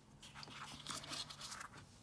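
Faint crinkling and rustling of a clear plastic planner cover and paper sticker sheets being handled, a scatter of small crackles.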